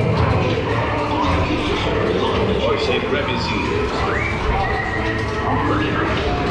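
Recorded voices of audio-animatronic pirates calling out over the ride's background music, in a continuous mix.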